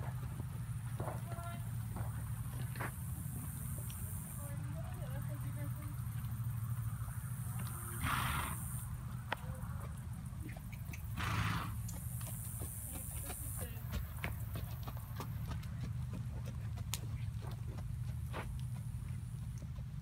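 Horse hoofbeats on an arena's sand footing, a scatter of soft clicks over a steady low hum, with two short, louder noisy bursts about eight and eleven seconds in.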